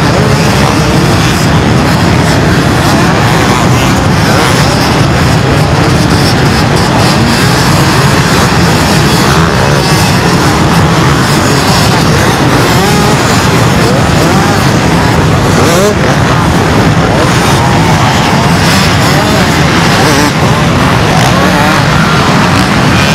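Hundreds of enduro and motocross bikes running at once in a massed race field: a loud, continuous engine din, with single bikes revving up and down within it.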